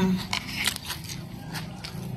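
Crispy potato chips being chewed: a string of irregular small crunches, about ten in two seconds.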